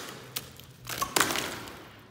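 Loose plaster being pried off a brick wall by hand. A small click, then a sharp crack just after a second in as a piece breaks away, followed by a short crumbling rattle of falling bits. The plaster has come away from the brickwork and is no longer bonded to the wall.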